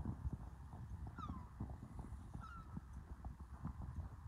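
Footsteps along the beach, an irregular run of soft thumps over a low rumble, with two short high calls about one and two and a half seconds in.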